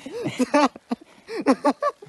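A man's voice in short bursts, with no clear words.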